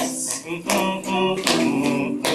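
Small classical guitar strummed in a steady rhythm, three chords a little under a second apart, each left ringing between the sung lines of a song.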